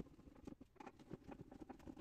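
Faint, irregular light clicks and taps of a small spanner working the nut on a handle bolt through a plywood box side.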